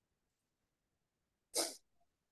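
A single short, sudden burst of breathy noise, like a person's sneeze, about one and a half seconds in, heard through a video-call microphone; otherwise near silence.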